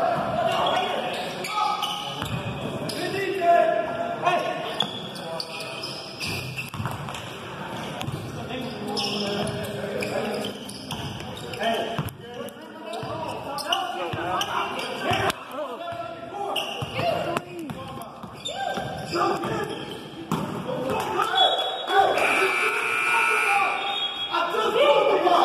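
Basketball game sounds in a gym with echo: voices calling out across the hall and a basketball bouncing on the hardwood court. Near the end there is a brief, steady high-pitched tone.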